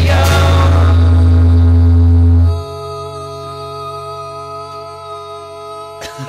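Final strummed chord of an acoustic-guitar jingle, with voices holding the last sung note. About two and a half seconds in, the voices and the low end stop suddenly and the guitar chord rings on, fading slowly.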